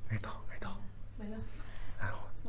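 A voice speaking softly in short, breathy, half-whispered phrases over a steady low hum.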